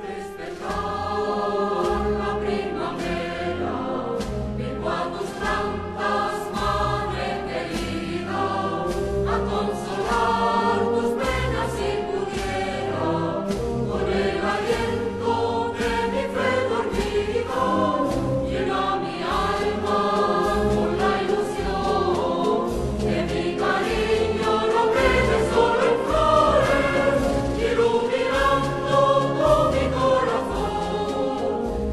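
Spanish wind band (banda de música) playing a Holy Week processional march: sustained brass and wind chords over a regular bass drum beat, with the full band coming in loud right at the start.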